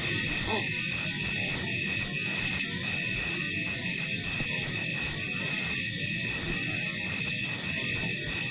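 Steady high-pitched chorus of night insects, with a low animal growling rumble underneath.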